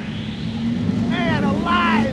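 Cheetah Hunt roller coaster train running fast along the track, with a steady low hum and a rush of wind noise. From about a second in, riders scream and whoop.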